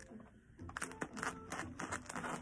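Scissors cutting open a home-compostable plastic-free mailer bag, the bag crinkling and crackling under the blades in a run of short irregular snips starting under a second in.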